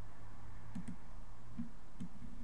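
Computer mouse clicking: a quick pair of clicks, then a single click about a second later, over a steady low room hum.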